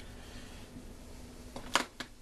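A faint steady hum with a single short, sharp click near the end.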